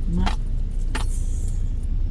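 Steady low rumble of a car driving slowly, heard from inside the cabin. Two short sharp clicks or rattles come in, the first just after the start and the second about a second in.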